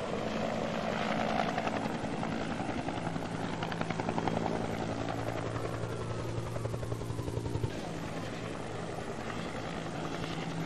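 Helicopter rotor and engine running steadily, a rapid even chop over a low drone.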